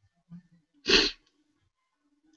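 A person sneezing once: a single short, loud burst about a second in.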